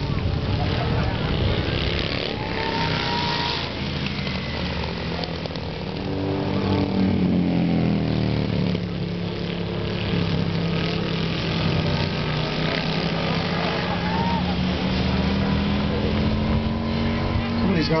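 Several big street motorcycles (Hooligan-class choppers and baggers) racing around a dirt flat track, their engine notes rising and falling as they lap. One engine climbs in pitch about seven seconds in and holds a steady drone for most of the rest.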